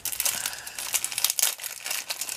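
Plastic wrapping around a pair of Stampin' Blends markers crinkling in the hands, a continuous run of quick crackles.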